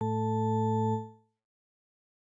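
Thorn CM software synthesizer sounding one low sustained note for about a second before it fades away. Its oscillator, set to the 'Organ 01' waveform with only a few harmonics, gives a plain organ-like tone.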